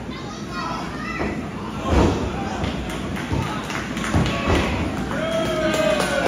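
A wrestler's body hits the canvas of the wrestling ring with a heavy thud about two seconds in, followed by a couple of lighter knocks, while spectators shout, one with a long held yell near the end.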